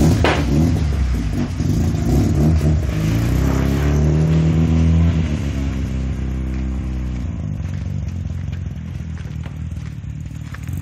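Mazda RX-7's rotary engine revving as the car pulls away, its pitch climbing over a few seconds, then fading as the car drives off.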